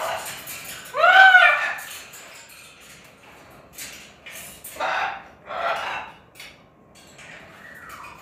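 Blue-and-gold macaw calling: a loud call that rises and falls in pitch about a second in, then two shorter, harsher calls around five and six seconds, with scattered light clicks in between.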